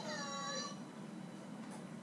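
A single short pitched call, like a meow, that rises and then falls in pitch and lasts under a second at the start.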